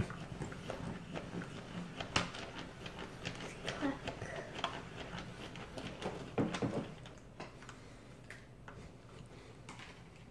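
Light, irregular clicks and taps of small plastic toy pieces and a Hatchimals CollEGGtibles egg shell being handled and cracked open on a plastic playset, with a sharper click about two seconds in and a brief cluster of handling noise a little after halfway.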